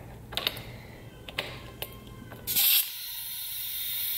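A brass air-line quick-connect coupler clicking as it is worked onto the boost leak tester's fitting, then a short, loud burst of air as it seats. A steady hiss of compressed air follows as the turbo intake is pressurised.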